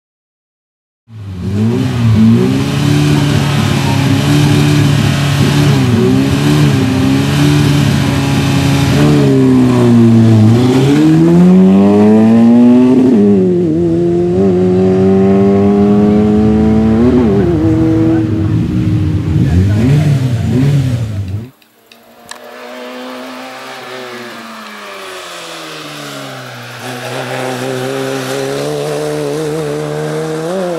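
Peugeot hatchback race car's engine revving hard through the gears, its pitch climbing and falling with each shift and lift off the throttle. About 21 seconds in the sound cuts abruptly to a quieter, more distant engine, which rises again near the end.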